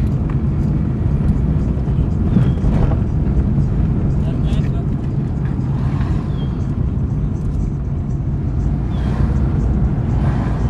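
Car engine and road noise heard from inside a slowly moving car, a steady low rumble, with indistinct voices now and then.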